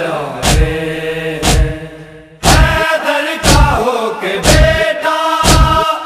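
A group of men chanting a Shia noha in unison, with a heavy chest-beat (matam) struck about once a second as the rhythm. The sound fades briefly a little after two seconds in, then comes back at full level.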